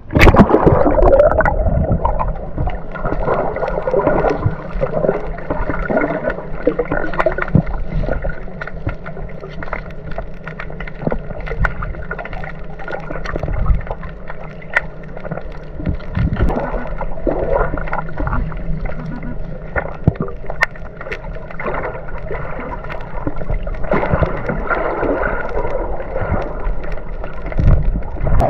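Muffled underwater noise heard through a submerged camera: a dull, steady rush of moving water, dotted with many small clicks and knocks. It begins with a loud plunge as the camera goes under.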